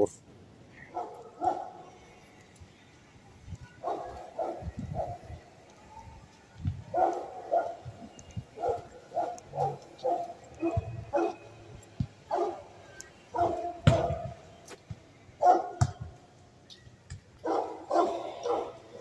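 Dogs barking in short runs of several barks, with gaps of a second or two between the runs.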